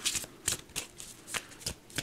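A deck of cards being shuffled by hand: a run of about six short, papery flicks and riffles.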